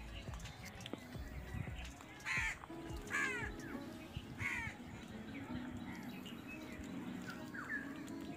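Birds calling in a garden: three loud calls, each falling in pitch, about two, three and four and a half seconds in, with fainter calls between and near the end.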